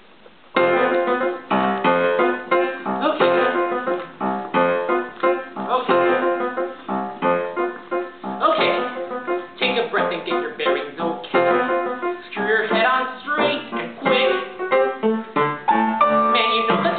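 Piano playing the introduction of a musical theatre song. It starts suddenly about half a second in with a busy run of notes and chords, ahead of the vocal entry.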